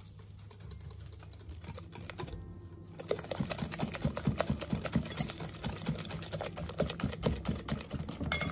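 Wire whisk beating eggs, sugar and vanilla in a glass bowl, its wires clicking against the glass. The clicks are soft at first, then from about three seconds in become a fast run, about five a second, and louder.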